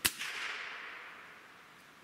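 A Gamo Swarm Magnum .177 break-barrel air rifle fires once, sending a 7.4-grain Premier pointed pellet out at 1,207 feet per second. One sharp crack is followed by a ringing tail that fades over about a second and a half.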